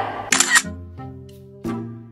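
An edited-in camera shutter sound effect about a third of a second in, followed by a short musical sting of two held notes. Each note fades out, and the second comes in about a second and a half in.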